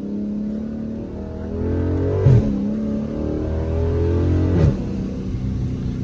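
Dodge Charger SRT 392's 6.4-litre HEMI V8 pulling hard under acceleration, heard from inside the cabin. The engine note climbs, then breaks and drops twice, about two and a half and about five seconds in, as the transmission shifts up.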